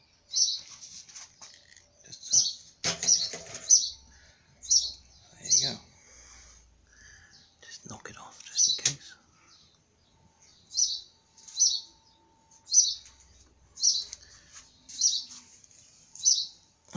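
A small bird chirping: short high chirps about once a second, often in pairs, with a few knocks among them.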